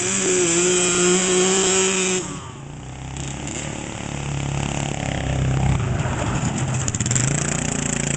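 Small single-cylinder engines: a dirt bike's engine runs at a steady high speed for about two seconds and cuts off suddenly, then the Briggs & Stratton engine of a bathtub go-kart, with the dirt bike, comes in lower and grows louder as they drive up close.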